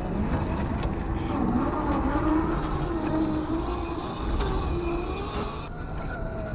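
A 1/10-scale RC crawler's electric motor and geared drivetrain whining as it crawls over wet river rocks towing a trailer. The pitch wavers up and down with the throttle, and there are a few light clicks.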